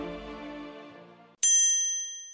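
Background music fading out, then a single bright bell-like chime struck about a second and a half in, ringing and fading away.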